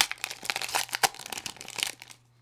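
Baseball card pack wrapper being torn open and crinkled by hand: a quick run of irregular crackles that stops as the cards come out.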